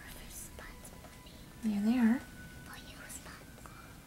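A short hummed 'mm-mm' from a person's voice, about half a second long and wavering up and down, around two seconds in. Otherwise only faint scratchy handling noises.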